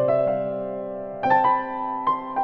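Slow, gentle piano music. A chord is struck and left to ring, then a few new notes come in a little over a second later.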